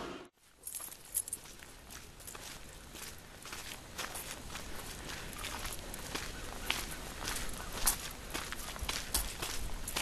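Footsteps of people walking on a partly snow-covered concrete sidewalk: a steady run of sharp steps that begins after a brief drop-out near the start.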